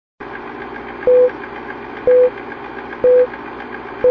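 Film-leader countdown sound effect: three short, loud beeps, one about every second, the first about a second in, over the steady clattering run of a film projector.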